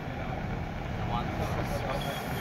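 Steady low outdoor background rumble during a pause in the talk.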